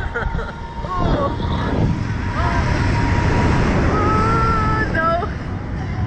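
Wind buffeting the microphone of a camera mounted on a Slingshot reverse-bungee ride in flight, with riders' short yells and one long held shriek about four seconds in.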